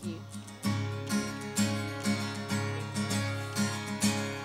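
Acoustic guitar strummed in a steady rhythm, about two strums a second, playing the introduction to a worship song before the singing comes in.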